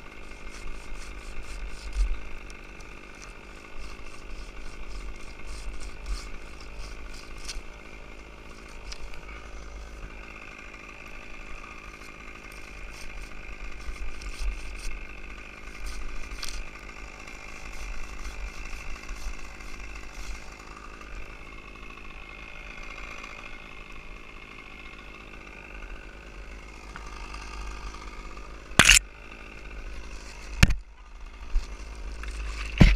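An engine running steadily, with scattered sharp clicks and one loud sharp knock near the end.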